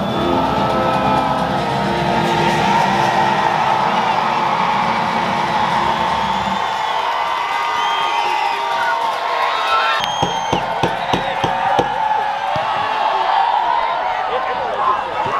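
A large crowd of student fans cheering and shouting, with music playing underneath. About ten seconds in the sound changes abruptly to a thinner mix with a few sharp knocks.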